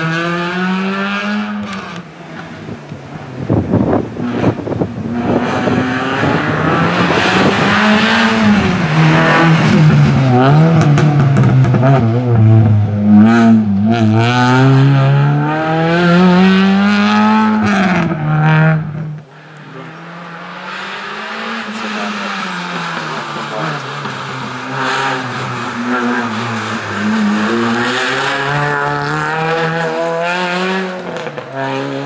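A race car's engine revving hard and easing off again and again as it weaves through cone chicanes, its pitch rising and falling every second or two. The sound drops away abruptly about two-thirds through, then comes back quieter, still revving up and down.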